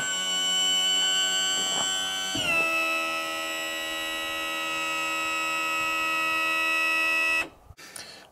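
Power trim motor and pump of a Mercury V6/V8 outboard running with a steady whine while trimming the engine down; the pitch drops about two and a half seconds in, and the whine cuts off near the end as the engine reaches full trim down.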